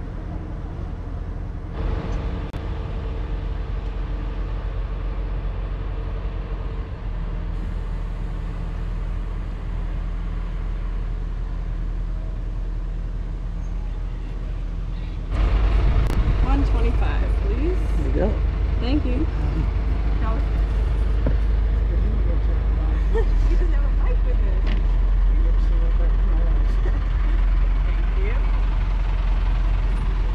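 Steady low drone of a small car ferry's engine. About halfway through it jumps louder, with people talking close by.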